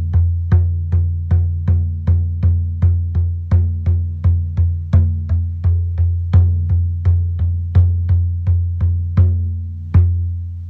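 Large elk-hide frame drum struck with a padded beater in a steady beat of nearly three strokes a second, each stroke a deep boom that rings on into the next. The beat slows to about one stroke every three-quarters of a second near the end.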